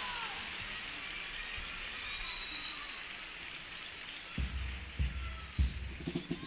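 Theatre audience applauding steadily. About four seconds in, a bass drum starts beating a few low, heavy strokes.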